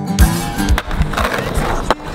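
Skateboard wheels rolling on asphalt, with a song playing over it that has a steady beat.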